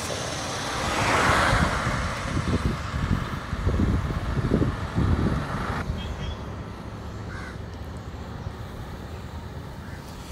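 Roadside traffic: a vehicle passes close by, swelling and fading about a second in, followed by uneven low rumbling. After about six seconds the sound drops to a quieter, distant traffic hum.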